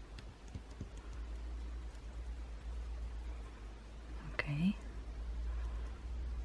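Fingertips rubbing and pressing Mod Podge-covered paper flat on a card to smooth out wrinkles, a faint rustling with small clicks over a low steady hum. About four and a half seconds in, a click and a brief rising 'hm' from a voice.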